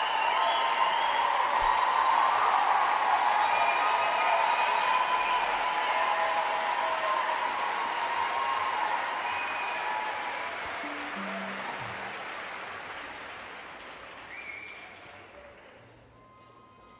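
Audience applauding in a concert hall, loud at first, then dying away over the last several seconds. A few faint held notes sound near the end.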